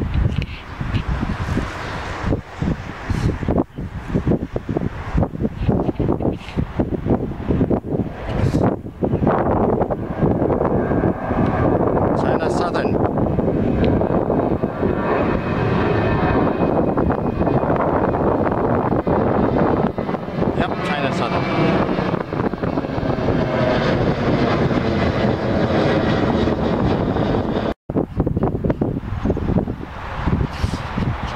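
Jet engines of a twin-engine narrow-body airliner climbing out after takeoff and passing overhead. Wind buffets the microphone for the first several seconds, then the engine roar builds from about ten seconds in, with a brief whine, and stays loud until it cuts off suddenly near the end.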